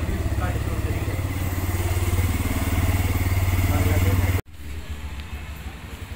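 A low, steady engine rumble close by, with faint voices, that cuts off abruptly about four and a half seconds in, leaving quieter outdoor sound.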